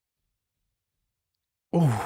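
Silence, then near the end a man's short "ooh" exclamation that falls in pitch.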